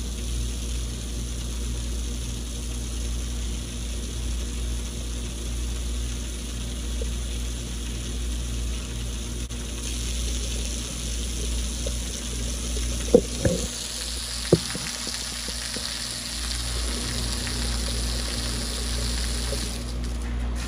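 Water spraying from a garden hose nozzle, a steady hiss that grows stronger in the second half, over a steady low hum. Two sharp knocks come a little after the middle, about a second and a half apart.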